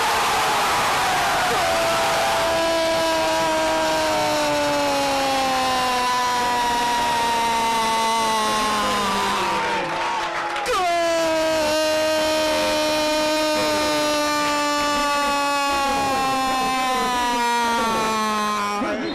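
A football radio commentator's drawn-out goal cry: one very long held shout whose pitch slowly falls, a brief breath about ten seconds in, then a second long held shout that starts sharply and sags in pitch in the same way.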